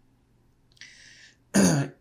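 A man clears his throat once, short and loud, near the end. A faint hiss comes just before it, about a second in.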